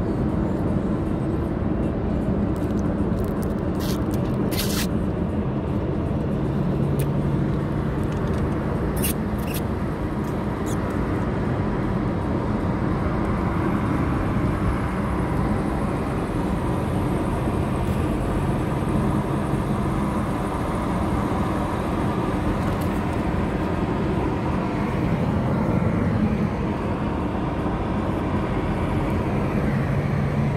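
Steady road and engine noise inside a moving car's cabin, with a few brief clicks about four seconds in and again near nine seconds.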